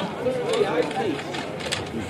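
Indistinct talking of several people near the stage microphones, with a few short clicks of handling.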